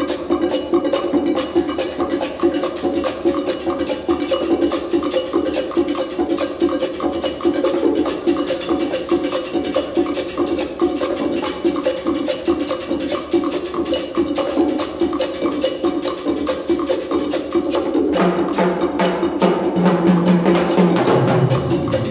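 Symphonic wind band playing a mambo: a fast, even percussion pattern of short strokes over sustained band chords. About 18 seconds in, a fuller passage with a low bass line comes in and the band grows louder.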